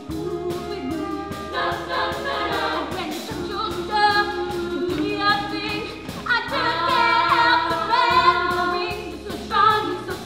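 A chorus of girls' voices singing an upbeat gospel-style number in unison and harmony, accompanied by a live pit band on keyboards. The singing swells louder past the middle.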